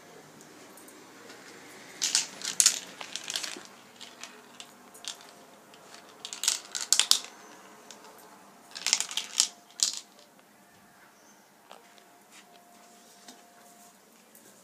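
Marbles clattering through a plastic marble run's tracks and funnels: three spells of quick clicking and rattling, about two, six and a half, and nine seconds in.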